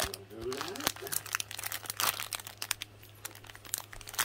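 Clear plastic sticker bag crinkling and crackling in irregular bursts as it is handled.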